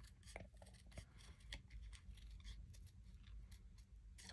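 Small craft scissors making faint, irregular snips while fussy cutting closely around a stamped image on card.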